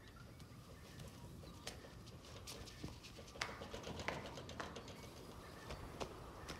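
Faint outdoor ambience with birds calling, with a few louder short sounds a little past the middle.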